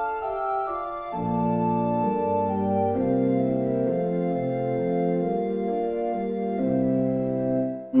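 Organ playing a solo interlude between hymn stanzas: sustained chords shifting every half second or so, with a bass line coming in about a second in. The sound breaks off briefly just before the end.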